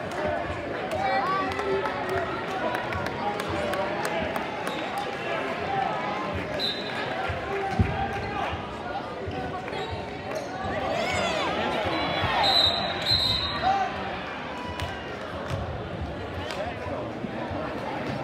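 Gymnasium crowd noise at a basketball game: many spectators talking and shouting at once, with a basketball bouncing on the hardwood and a sharp thump about eight seconds in. The crowd grows louder about two-thirds of the way through, with a few short high-pitched squeaks.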